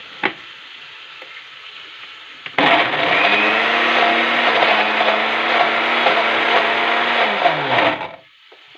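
A knock as the blender jar is set on its base. About two and a half seconds in, an electric blender (mixer-grinder) starts abruptly and runs steadily for about five seconds, grinding a very thick onion-tomato masala. It is then switched off, its pitch falling as the motor spins down.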